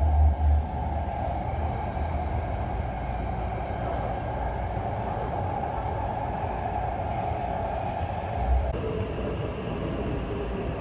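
Taipei metro train car running along an elevated line, heard from inside: a steady hum over a low rumble, and the hum drops in pitch near the end.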